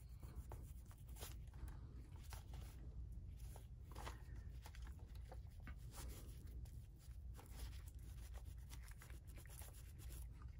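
Faint, scratchy rubbing in short, irregular strokes: a wad of paper towel scrubbing grime off the plastic back of a Panasonic 850 calculator.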